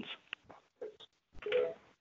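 Brief telephone keypad tones and a sharp click over a teleconference phone line, with quiet gaps between.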